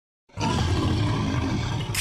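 Lion's roar used as an intro sound effect: one long, low roar that starts about a third of a second in.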